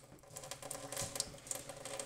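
Thin stream of tap water falling into a stainless steel sink basin, heard as a faint trickle with irregular light ticks and clicks.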